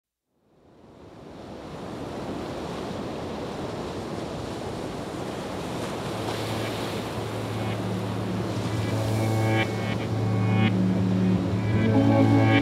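Sea surf washing onto a pebble beach, a steady wash that fades in at the start. About halfway through, background music joins, first as a low held drone and then with a melody of higher notes, growing louder toward the end.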